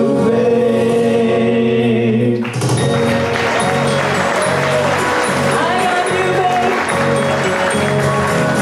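A man and a woman singing a duet over a small live band with upright bass. They hold a long note together, and about two and a half seconds in the accompaniment suddenly gets louder and fuller while the singing goes on.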